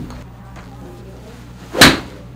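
A golf iron strikes a ball off a hitting mat: one sharp crack about two seconds in, with a steady low hum before it. The shot is a mis-hit.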